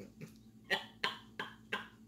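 A woman gives four short, breathy bursts from the throat, about three a second.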